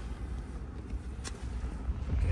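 Low background rumble with two faint short clicks, about two-thirds of a second and a second and a quarter in.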